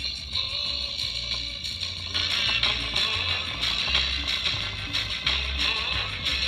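Cheap 3-watt, 4-ohm speaker driver playing music with a steady pulsing bass beat, driven hard to blow it out; it is getting hot enough to smell.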